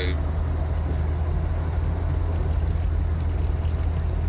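Jeep Wrangler engine running, a steady low drone heard from inside the cabin.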